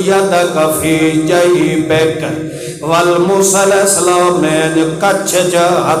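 A man's voice chanting in a drawn-out, melodic recitation through a microphone, holding long notes that step up and down, with a brief break about two and a half seconds in.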